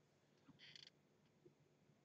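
Near silence: room tone, with one faint, brief sound about half a second in.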